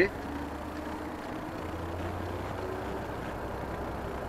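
Renault Trucks Euro 6 diesel engine running in neutral, heard from inside the cab, its speed being raised from the preset 900 rpm with the cab's engine-speed plus button; the engine note steps up in pitch about halfway through.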